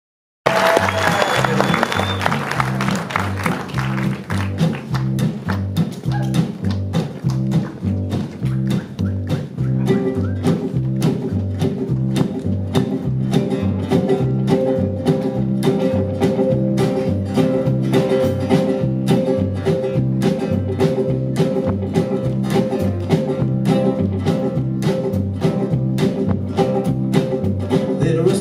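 Acoustic guitar strumming a steady, driving rhythm with upright bass under it: the instrumental intro of a live folk song. Audience applause over the first few seconds fades as the playing takes over.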